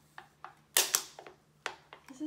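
Empty aluminium soda can being picked up and handled by a toddler, giving a series of sharp taps and clinks; the two loudest knocks come close together just under a second in.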